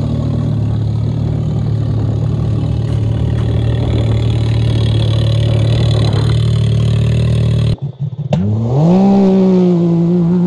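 Can-Am Maverick X3's turbocharged three-cylinder engine running at a steady speed, with a rattling noise from the studded tires on ice. Near the end the sound cuts briefly, then the engine revs up sharply and holds at high revs as the machine drives on the ice.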